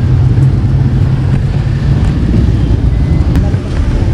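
Steady low rumble of street traffic, with a vehicle engine running close by.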